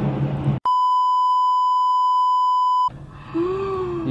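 Censor bleep: a steady pure beep at about 1 kHz, lasting a little over two seconds and cutting in and out sharply, laid over a phone recording made in a storm. Before it there is rushing wind noise on the microphone, and near the end a woman's drawn-out cry begins.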